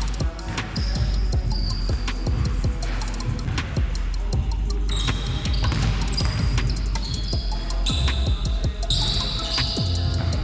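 A basketball dribbled and bouncing on a hardwood gym floor, many short thuds, over background music with a steady bass.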